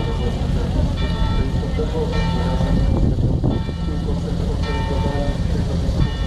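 Church bell ringing, a ringing stroke about every second or so, over crowd murmur and wind rumbling on the microphone.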